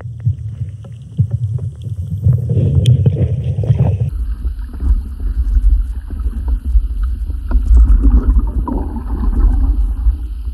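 Water noise heard through a submerged camera: a muffled, low rumble and sloshing with scattered small clicks. About four seconds in the sound changes abruptly to a deeper, steadier rumble.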